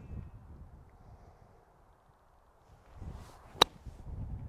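A wedge swung for a flop shot: a brief swish, then a single crisp click as the clubface strikes the golf ball about three and a half seconds in.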